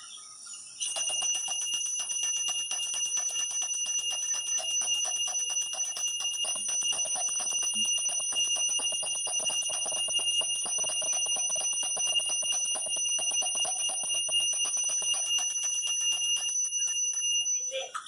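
Hand-held puja bell rung continuously for the aarti, a rapid steady clapper ringing that starts about a second in and stops just before the end.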